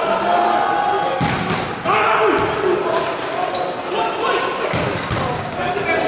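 Volleyball smacks echoing in a large sports hall: a sharp hit about a second in and two more near the end as a rally begins, over players' shouts and chatter.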